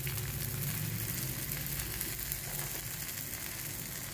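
Ragi adai (finger millet flatbread with drumstick leaves) frying in oil in a non-stick pan on a medium flame: a steady sizzle with fine crackles.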